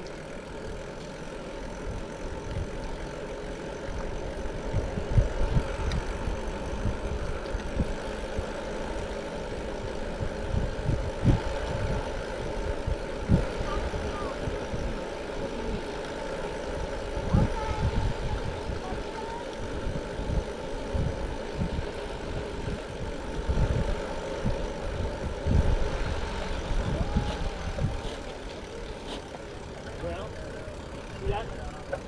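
Wind buffeting the microphone in irregular low gusts while riding a bicycle, over a steady hum of tyres rolling on pavement.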